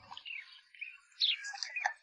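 Small birds chirping: a run of short, high chirps and quick sliding calls, thickest in the second half.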